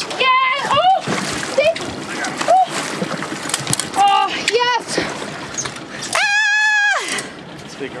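Excited wordless cries from the anglers, short yelps and then one long high-pitched cry held for nearly a second about six seconds in. Under them, the water splashes as a hooked chinook salmon is brought to the landing net at the side of the boat.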